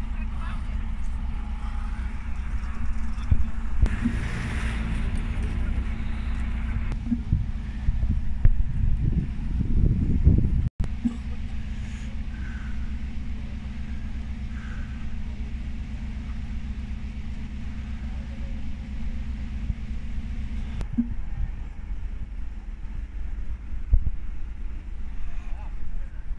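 Mercedes-Benz Citaro city bus engine running steadily at low speed as the bus manoeuvres on packed snow. A brief louder stretch comes just before an abrupt cut about eleven seconds in, after which the engine drone continues.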